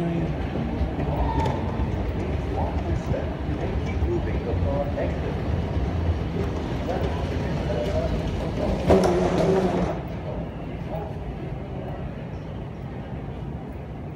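Terminal moving walkway running with a steady low rumble under faint, distant voices. There is a brief louder burst about nine seconds in, and the rumble fades soon after.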